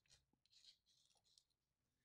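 Very faint scratching of an ink pen nib on sketchbook paper: a few short strokes as a word is lettered.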